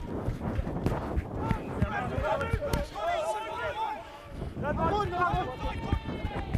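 Several rugby players shouting calls to each other, overlapping and unclear, with a lull about four seconds in and a few scattered thuds.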